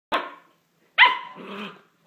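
Six-week-old standard poodle puppy giving two short, high barks in play as it tussles with a plush toy: one just after the start and one about a second in.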